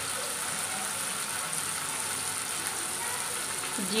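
Onion and tomato masala frying in oil in a kadai, a steady sizzle.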